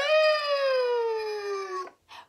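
A woman imitating a rooster's crow, 'cock-a-doodle-doo', ending in one long drawn-out note that slides slowly down in pitch and stops just before the end.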